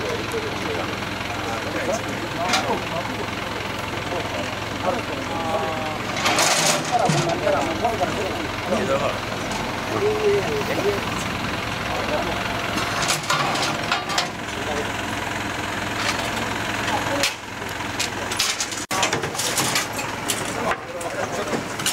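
A truck engine idling steadily, a constant low hum, under people's voices, with a few sharp knocks.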